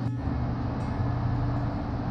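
Steady rushing of a fast-flowing river over rocks, an even wash of noise with a low rumble beneath it, briefly dropping out just after the start.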